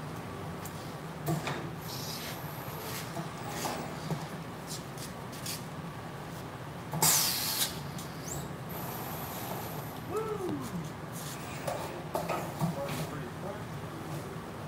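Print-shop working sounds: a steady low machine hum with scattered knocks and clatter as a shirt press is worked, a short loud hiss about seven seconds in, and a brief falling whine about ten seconds in.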